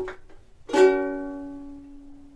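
Pineapple-shaped ukulele: the rhythmic strumming stops, and about two-thirds of a second later a single final chord is strummed and left to ring, fading away slowly.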